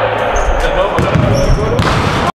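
Basketballs bouncing on a hardwood court, with a run of quick bounces about a second in, under players' voices.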